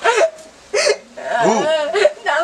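A voice making wordless sounds: a short sharp hiccup-like catch just under a second in, then a wavering, pitch-bending cry.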